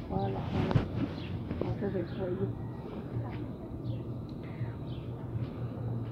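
People talking faintly over outdoor street background noise; the voices fade after about two seconds, leaving a steady low hum with a few brief high chirps.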